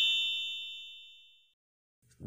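Synthesized chime sound effect of an intro jingle: a cluster of high ringing tones dying away over about a second and a half into silence.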